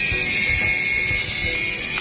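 Agaro electric callus remover running with its roller head spinning freely in the air, giving a loud, steady high-pitched whine.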